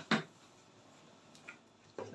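A paper pattern being handled: one short rustle just after the start, then quiet room tone with a faint tick about halfway through.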